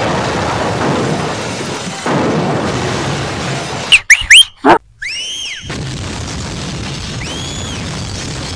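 Movie explosion and blast noise: a dense, continuous rumble. About four seconds in, it cuts to a quick string of loud whistling sound effects sweeping up and arching down, then the blast noise returns with a few faint arching whistles near the end.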